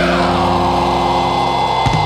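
Metalcore band recording: a held, distorted electric guitar chord rings steadily under a dense noisy wash, with sharp hits coming in near the end.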